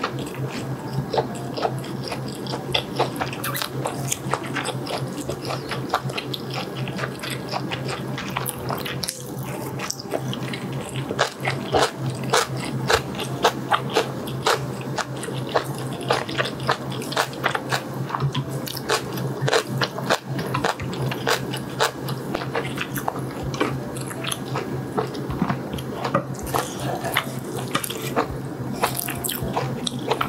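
Close-miked eating of spicy instant ramen and fried chicken: continuous chewing with many irregular wet, sticky mouth clicks. A steady low hum runs underneath.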